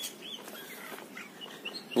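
Birds chirping faintly, a few short chirps scattered over a steady outdoor hiss.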